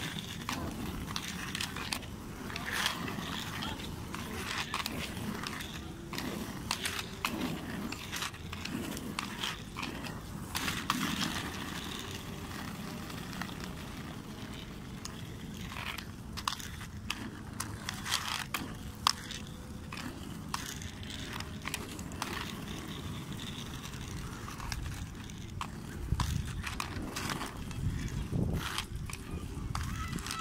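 Handling noise of a hand-held camera being carried: irregular rustling, clicks and knocks over a low rumble.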